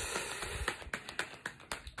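A tarot deck being shuffled by hand: a run of quick, irregular card clicks and rustling.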